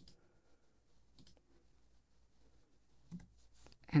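A few faint computer mouse clicks, spread a second or two apart, over quiet room tone.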